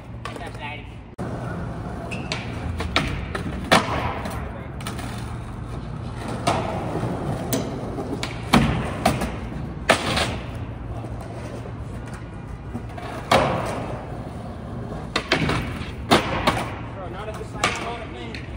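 Skateboard wheels rolling on rough concrete, with sharp clacks and thuds several times as the board is popped and lands on and around a concrete ledge.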